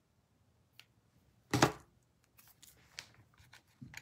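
Small hand snips cutting cooled hot-glue overflow off a glue piece: a faint click, then one sharp snap about one and a half seconds in, followed by a few small clicks.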